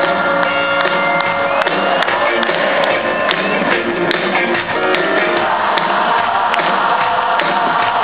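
Live rock band music played at full volume in an arena, recorded from among the audience.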